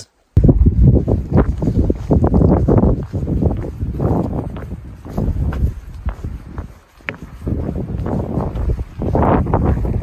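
Wind buffeting the phone's microphone: a loud low rumble that rises and falls in gusts, easing briefly about three and seven seconds in.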